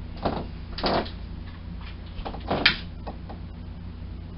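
Objects being handled on a table: three short noises about a second apart, the last the loudest, then a couple of faint clicks, over a steady low hum.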